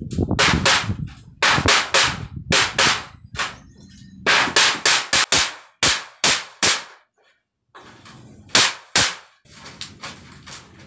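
Hammer striking a galvanized iron sheet as its edge is beaten down over a wooden beam to bend it: a rapid series of sharp blows, several a second, with a brief pause about seven seconds in.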